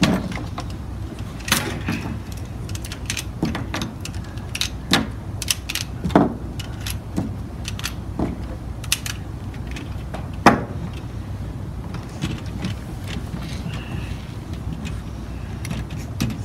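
Irregular clicks and clacks of LEGO robot parts and attachments being handled, fitted and set down on the table, over a steady low hum. The sharpest knock comes about ten seconds in.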